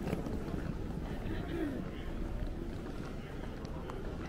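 Busy airport terminal ambience: a steady low rumble with indistinct voices of passers-by and a few faint clicks.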